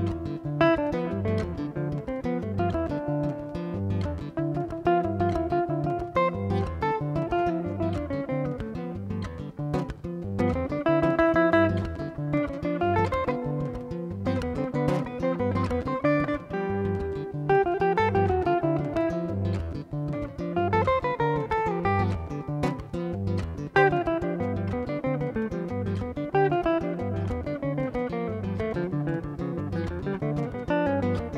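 Hollow-body archtop electric guitar playing a melodic jazz-style solo over a steady pulse of low bass notes.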